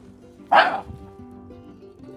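A dog barks once, loudly, about half a second in, over soft background music.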